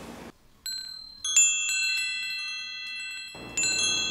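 Shimmering wind-chime sound effect: a run of high ringing tones struck in quick succession about a second in and left to ring, with a second run just before the end. It marks the waking from a dream.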